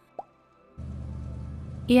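A short pop, then a car engine idling sound effect that cuts in about a second in: a steady low running hum.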